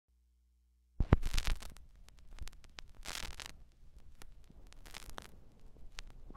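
A turntable stylus set down on a vinyl LP about a second in with a sharp click, then crackle and scattered pops from the lead-in groove before the music starts.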